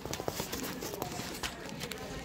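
Plastic candy packaging crinkling as it is handled, a run of small irregular clicks and crackles.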